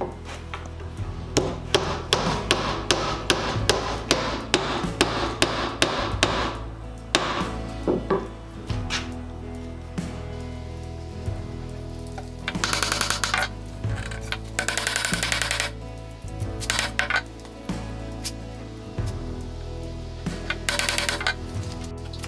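Hammer tapping wooden drawbore pegs down into the holes of a breadboard end: a quick run of taps over the first six seconds or so, then a few short bursts of rapid taps later. Background music runs underneath.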